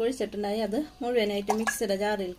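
A woman's voice speaking continuously; no other sound stands out.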